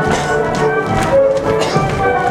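Polish folk dance music playing, with dancers' shoes tapping and stamping on the stage floor in time with it.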